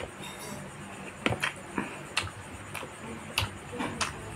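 Close-miked eating sounds of a man eating by hand: about seven sharp clicks and smacks, irregularly spaced, from chewing and fingers picking rice from the tray.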